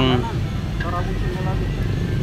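Steady low rumble of street traffic, with a few indistinct words about a second in.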